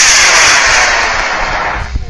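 Aerotech F47W model rocket motor burning at lift-off, a loud rushing hiss that fades as the rocket climbs away and stops near the end.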